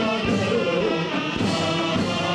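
Ottoman mehter military band performing: men singing together over the band's instruments, with struck beats about once a second.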